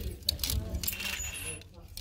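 Clothes hangers clicking and scraping along a clothing rack rail as garments are pushed aside, a scatter of sharp metallic clicks, quieter near the end. Faint voices of other shoppers carry in the background.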